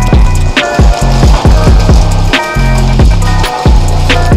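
Hip-hop backing music with a heavy sustained bass and sharp drum hits.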